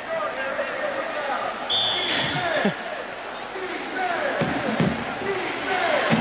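Stadium crowd murmur from a college football game, with voices calling out over it. A short, steady high whistle blast comes about two seconds in.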